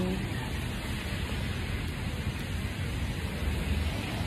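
Steady hiss of falling rain, with a low rumble underneath.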